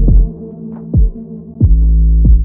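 Electronic background music with deep 808-style bass kicks, each dropping sharply in pitch, three in these two seconds, over sustained bass notes.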